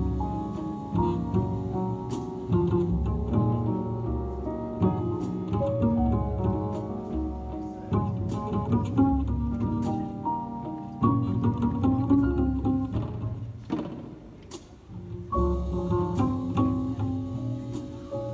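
Live jazz instrumental passage on grand piano and plucked upright double bass. The playing thins out briefly about two-thirds of the way through, then comes back in full.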